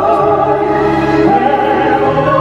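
Operatic singing, voices holding long notes that slide slowly between pitches over instrumental accompaniment.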